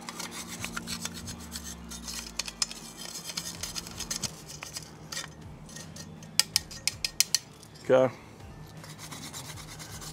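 Small wire brush scraping and scrubbing buildup out of the slotted stainless steel pellet box of a Ninja Woodfire outdoor grill: a run of short scratchy strokes, with a few sharper clicks of brush on metal about six to seven seconds in.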